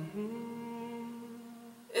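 A woman humming one long note that sags slightly in pitch and fades out near the end.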